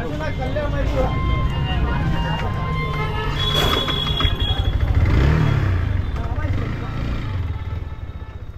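Yamaha R15 V4's single-cylinder engine running, with a short rise in revs about five seconds in as the bike rolls off.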